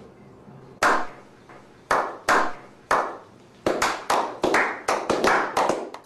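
A slow clap by a small group of men: single hand claps about a second apart, each with a short echo, speeding up into quicker clapping over the last couple of seconds.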